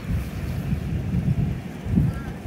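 Wind buffeting the microphone: an uneven low rumble in gusts, with a louder gust near the end.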